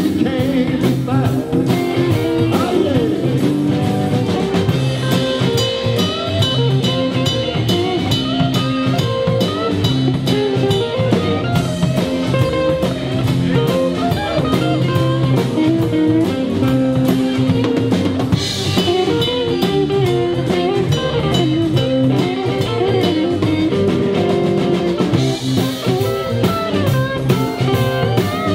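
Live blues-rock band playing an instrumental stretch: an electric guitar plays over a steady drum-kit beat.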